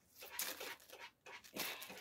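Faint rustling of a small clear plastic bag being handled, in short bursts.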